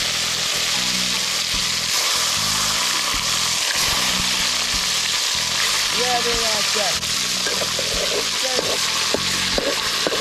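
Cut pieces of eel frying in hot oil in an aluminium pot: a steady, loud sizzle, with a few light clicks of a spatula against the pot in the second half.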